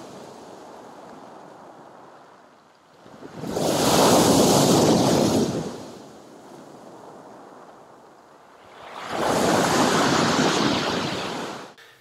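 Sea waves breaking on a pebble beach and against a concrete pier base, with two loud surges about four and ten seconds in and a quieter wash between them.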